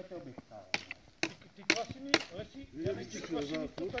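Four sharp clicks or knocks about half a second apart, over quiet voices in the background.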